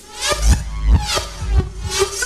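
Electronic breakbeat dance music from a DJ mix. It drops abruptly into a sparser section of heavy deep bass hits, roughly every half second, under a sweeping filtered high end.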